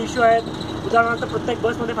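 A man talking excitedly over the steady hum of a city bus's engine, heard inside the bus cabin.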